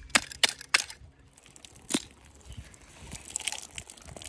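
Small hammer tapping on the shell of a kina (New Zealand sea urchin) to crack it: three sharp taps within the first second and another about two seconds in. Then faint crackling as the cracked shell is pried apart by hand.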